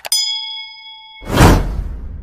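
Sound effects for an on-screen subscribe button: a mouse click followed at once by a bright notification-bell ding that rings for about half a second, then a loud whoosh about a second and a quarter in that fades away slowly.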